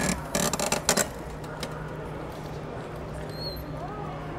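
A quick flurry of rustling and knocking in the first second, as a person climbs out of a Citroën 2CV through its open door, then only a steady low hum.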